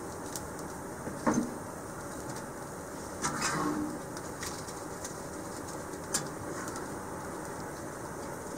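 Kindling fire crackling in a small steel wood stove, with a sharp metal knock a little over a second in and the round steel firebox door clanking and scraping into place around three seconds in.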